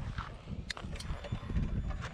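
Harley-Davidson Low Rider S V-twin running at low speed over a bumpy dirt road: an uneven low rumble, with two sharp knocks near the middle as the bike jolts over the ruts.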